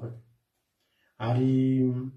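A man's voice chanting: a phrase trails off at the start, then a syllable is held on one steady pitch for about a second, beginning a little past one second in.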